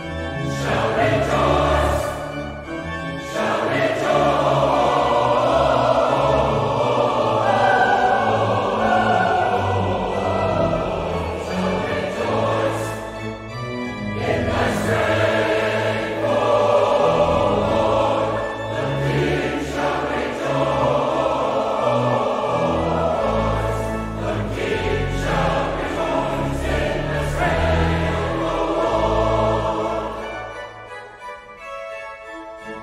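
Large mixed choir singing a classical choral piece in phrases, with short breaks between them. Church organ accompanies with sustained low bass notes.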